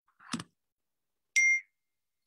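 A short soft knock, then about a second later a single loud electronic beep, one steady tone held briefly before it stops.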